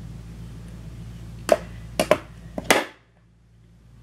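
Several sharp clicks and taps in quick succession, about a second and a half to three seconds in, over a steady low hum that then cuts out suddenly.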